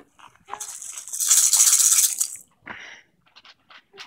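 Handheld baby rattle shaken for about a second and a half, with a few shorter, softer rattles before and after.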